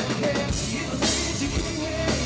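Live rock band playing: drum kit and electric guitar, with a singer on a handheld microphone.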